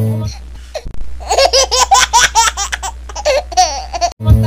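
The guitar and singing cut off about a third of a second in. Then comes a high-pitched peal of laughter, rapid repeated ha-ha bursts lasting about two and a half seconds.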